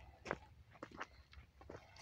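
Faint footsteps on dry leaf litter and twigs, a few irregular soft crackles.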